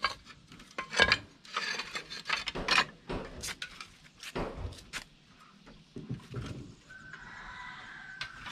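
Fired clay roof tiles knocking, clinking and scraping against one another as they are lifted off a stack and handled, in a series of irregular sharp knocks. A faint steady high tone comes in near the end.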